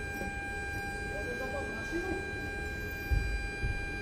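Steady equipment hum: a low rumble under a constant high whine, with a low knock about three seconds in.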